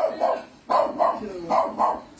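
A dog barking: about six short barks, in three quick pairs.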